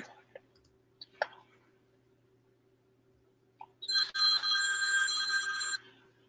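An electronic ringing tone, several steady pitches sounding together, lasting about two seconds and starting about four seconds in. Before it there is only faint room noise and a couple of small clicks.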